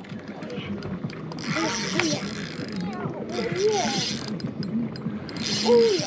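Spinning fishing reel being wound in three short spells, its gears running in a whirring, clicking sound.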